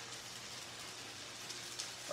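Udon noodles frying in sesame oil in a hot pan over medium-high heat: a low, steady sizzle.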